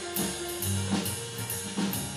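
Live jazz combo: an upright double bass plucked, its low notes changing every half second or so, over a drum kit with regular snare and cymbal hits.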